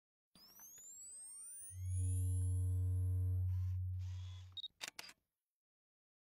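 Channel logo intro sound effect: electronic sweeps rising in pitch build into a loud deep drone that fades out, followed near the end by a few sharp camera-shutter-like clicks.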